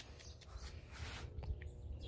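Quiet outdoor background: a faint low rumble with a few soft ticks about a second in.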